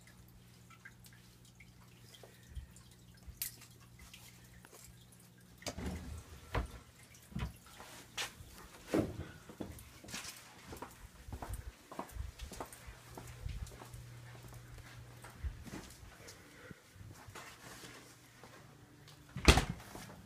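Footsteps and scattered light knocks of a person moving through a house, over a faint steady low hum, with a louder thump just before the end.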